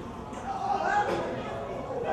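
Indistinct murmur of audience voices in a large hall, swelling briefly about a second in.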